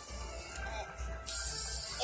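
A light-up fidget spinner spinning on its bearing, heard as a steady high whirring hiss that starts about a second in, over faint background music.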